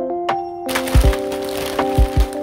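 Background music with steady notes and a low drum beat. Under a second in, the crinkle and crackle of plastic snack packets joins it as they are dropped onto a wooden floor.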